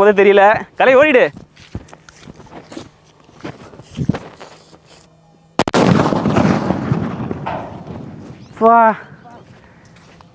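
A large cylindrical country-made firecracker (nattu vedi) going off: a single loud blast about five and a half seconds in, dying away over a few seconds.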